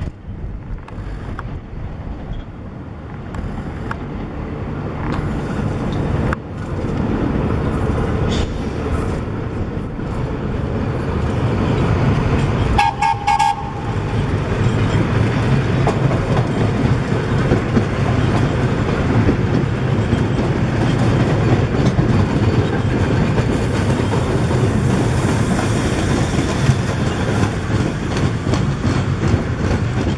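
Vintage 1920s BMT subway train running on elevated track, growing louder as it approaches and passes close by with a steady rumble of wheels on rail. A short horn toot sounds about halfway through.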